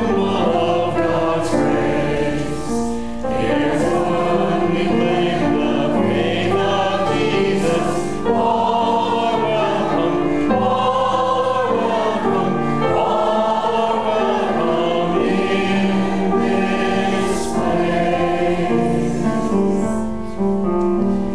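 Many voices singing a hymn together in slow, held chords.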